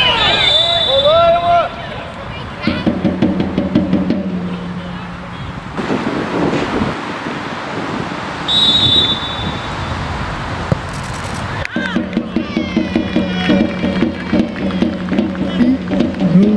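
Referee's whistle, two short shrill blasts: one right at the start and one about eight and a half seconds in, the second blowing for a penalty kick. Players' shouts and voices carry across the pitch around them.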